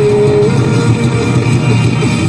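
Rock band playing live with no vocals: electric guitars, bass guitar and drums, with a guitar note held for about the first half second.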